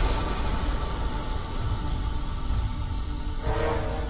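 Dramatic TV-serial background score over a deep, steady rumble; a sustained musical tone comes in about three and a half seconds in.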